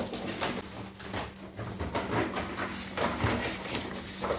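Paper gift bag crinkling and rustling as a boxed blender is slid out of it, an irregular run of scratchy rustles.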